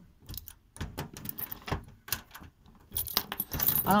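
Metal hand tools clinking and rattling against each other as a hand rummages through a toolbox drawer. The clinks come in scattered clusters and grow louder and busier near the end.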